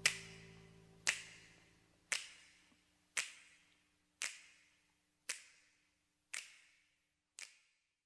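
Closing bars of a rock recording: finger snaps, one about every second, each with a reverberant tail, growing fainter until they stop near the end. At the start a held low chord dies away under them.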